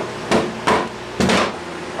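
Claw hammer striking wooden strips glued to a board to knock them loose: about four sharp wooden knocks in quick succession, the last one longer.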